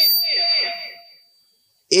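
A man's voice through a public-address microphone trailing off into hall echo over the first second, with a thin steady high-pitched whine beneath it. Then a brief dead silence before his speech starts again near the end.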